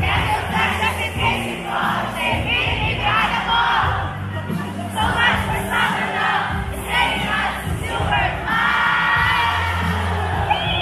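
A large crowd cheering and shouting over loud amplified pop music with a vocal line and a bass line.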